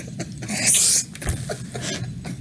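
Men laughing hard without words, in short irregular bursts, with one loud breathy, wheezing laugh a little under a second in.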